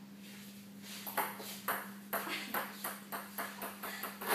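A table tennis ball bouncing on the table: a run of about ten light, sharp clicks starting about a second in, the bounces coming closer together.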